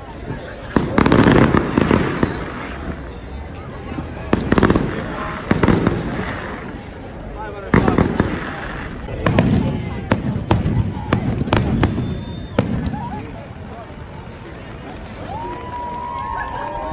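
Fireworks display: aerial shells bursting in a run of loud booms a second or a few apart, with a cluster of sharp crackles near the middle. People's voices carry underneath.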